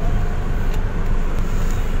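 Street traffic: a steady rumble of car engines and road noise as a car moves past close by.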